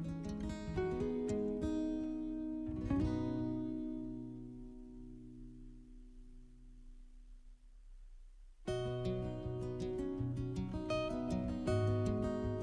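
Background acoustic guitar music, plucked and strummed. About three seconds in, a chord rings out and slowly fades, and the strumming starts again near the three-quarter mark.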